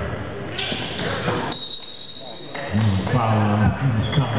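Gymnasium sound during a basketball free throw: people talking in the hall and a ball knocking once about half a second in. About a second and a half in, a high steady whistle-like tone sounds for about a second.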